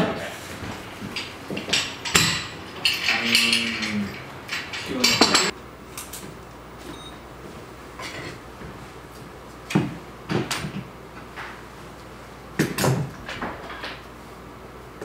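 Scattered knocks and clattering of objects being handled, with a few low voices in the first seconds. The background then drops to a quieter hiss about five seconds in, and a few separate knocks follow.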